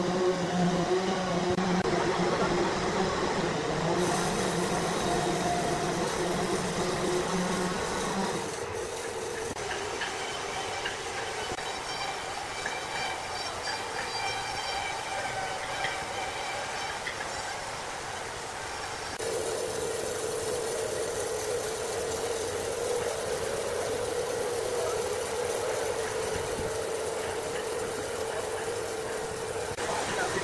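Large horizontal log band sawmill running: a steady mechanical hum with several held tones, changing abruptly in character a few times.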